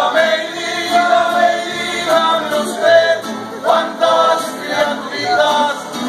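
Live mariachi band playing, with violins, trumpets, guitarrón and vihuela, and several men singing together over the instruments.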